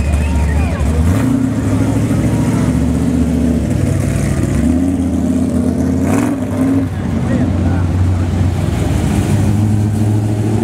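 Loud, low engine exhaust of old hot rods cruising slowly past, the revs rising and falling briefly around the middle.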